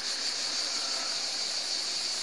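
A steady, high-pitched chorus of insects droning without a break.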